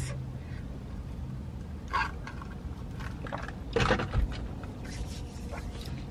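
Steady low hum of a car cabin, with brief faint mouth and cup sounds of iced cold brew being sipped through a straw, the most noticeable about four seconds in, ending in a soft thump.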